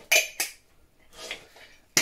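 Funko Soda tin can and its plastic lid clinking as they are handled and the lid is pushed back on: two sharp clicks close together near the start, then a softer rattle about a second later.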